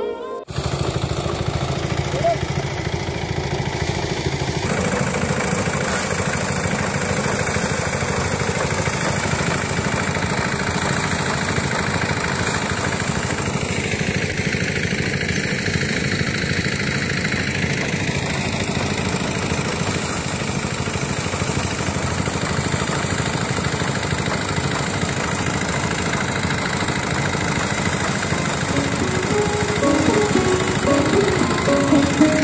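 Small engine-driven paddy threshing machine running steadily as rice sheaves are fed into its drum.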